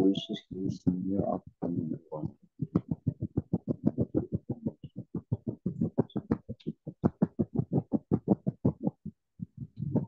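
A voice coming through a video call, chopped into rapid unintelligible fragments about five times a second.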